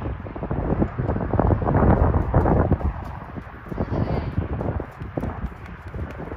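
Hoofbeats of a ridden horse on deep sand: an irregular run of dull thuds, louder in the first half and fainter after about three seconds.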